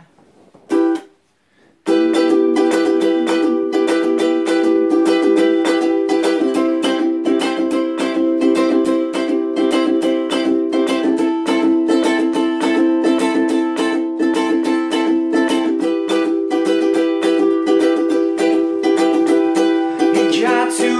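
Ukulele strummed in chords: one short chord about a second in, then steady continuous strumming from about two seconds on, the instrumental intro before the vocals come in.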